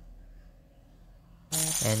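A pause in speech, with only faint low room hum, then a man's voice starts speaking near the end.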